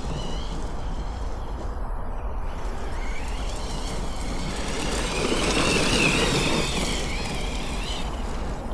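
Losi Hammer Rey RC truck's electric motor and drivetrain whining as it drives, the pitch rising and falling with the throttle and loudest a few seconds before the end, over a steady low rumble.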